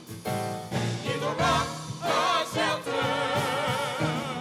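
Gospel praise team of several singers singing together over a keyboard, voices swelling with vibrato; the singing picks up again after a short break right at the start.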